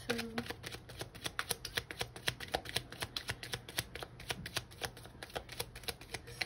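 A deck of oracle cards being shuffled by hand: a quick, even run of light card slaps, about seven a second.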